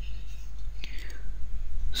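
A speaker's soft breath sounds, a breathy hiss near the start and another about a second in that falls in pitch, over a steady low electrical hum on the microphone.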